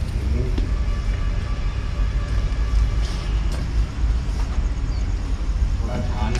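A few scattered footsteps on loose brick rubble, heard as light clicks, over a steady low rumble.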